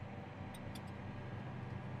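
John Deere tractor's diesel engine running steadily at low revs, about 1250 rpm, heard faintly from inside the cab. The e23 transmission in full auto has let the revs settle to the minimum needed for the light load at 7 mph. A few faint ticks come about half a second in.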